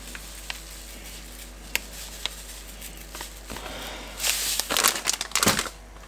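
A plastic bag of breadcrumbs crinkling as it is handled, with a few faint clicks first and a louder burst of crinkling about four seconds in that lasts over a second.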